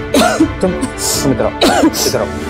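A woman crying, with short wavering sobs and sharp breaths, over soft background music.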